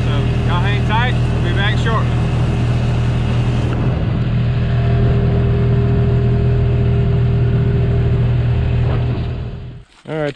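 Engine of a Ranger side-by-side utility vehicle running at a steady cruising speed on a dirt road, a low, even drone. A few voice-like sounds come in over it in the first two seconds, and the engine sound falls away just before the end.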